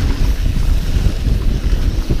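Wind buffeting the microphone of a camera carried on a moving mountain bike: a loud, irregular low rumble.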